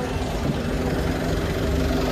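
A bus running at a stop, a steady low rumble with a faint hum.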